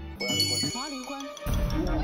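A bright, ringing chime sound effect strikes just after the start and rings on for about a second under a brief voice. Then music with a heavy bass comes in about a second and a half in.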